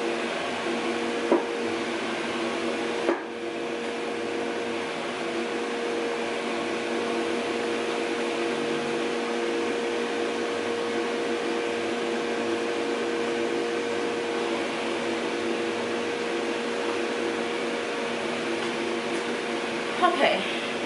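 Standing hooded hair dryer's blower running with a steady hum and hiss. Two short knocks about one and three seconds in as the hood and stand are adjusted.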